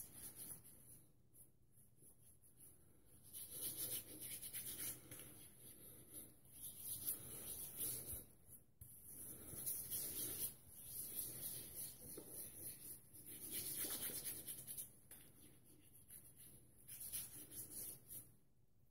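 Fingertips rubbing shaving-soap lather into stubble on the face as a pre-shave, a faint wet rubbing that comes in short bouts with brief pauses between them.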